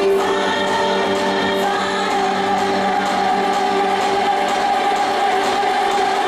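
Music playing for a dance routine: sung vocals over long held notes, at an even, loud level throughout.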